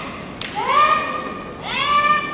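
Two kiai shouts from young women performing naginata kata. Each is a high call that rises quickly and then holds, the first about half a second in and the second near the end. Just before the first shout comes a single sharp knock, as the practice naginata meet.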